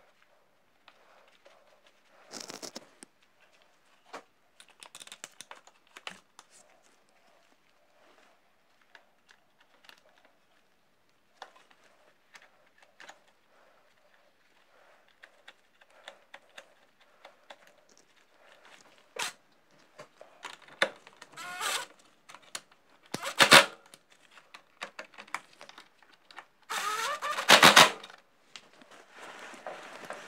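Hand work on a motorcycle's rear chain guard and swingarm: scattered clicks and knocks of parts and tools, sparse at first, then busier, with louder rattling bursts in the last third.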